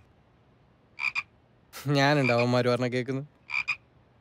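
A man's long, drawn-out vocal sound held on one steady pitch, with two short chirps just before it and two more just after it.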